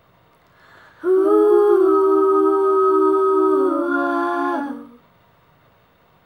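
A woman's voice holding one long wordless note of an a cappella melody, starting about a second in and lasting nearly four seconds, with a soft breath just before it.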